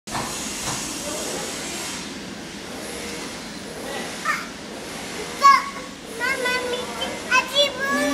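A toddler squealing and babbling excitedly in short, high-pitched bursts over a steady hiss. The voice starts about four seconds in, and the loudest squeal comes about a second after that.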